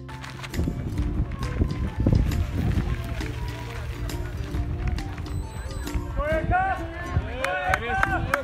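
Background music with a low, uneven rumble underneath; from about six seconds in, spectators shout encouragement, louder towards the end.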